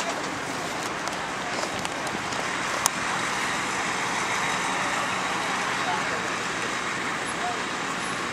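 Steady road-traffic noise from vehicles on the street, growing a little louder in the middle, with one sharp click about three seconds in.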